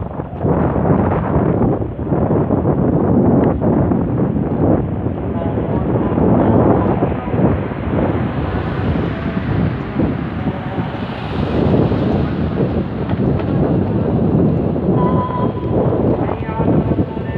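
Strong, gusty wind buffeting a phone's microphone, ahead of an approaching rainstorm. Faint pitched voice-like tones come through near the end.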